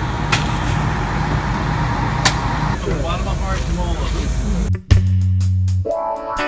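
Tour coach engine idling with a steady low rumble, with two sharp clicks and faint voices over it. About five seconds in it cuts off suddenly and background music with bass and drums takes over.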